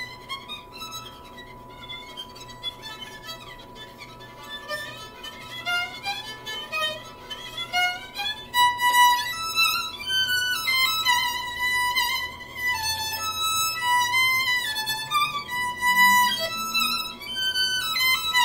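Solo violin played with the bow, a melody of moving notes. It is softer for the first half and grows louder from about halfway through.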